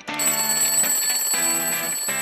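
Theme music with an alarm clock bell ringing over it in a steady high ring that starts just after the beginning.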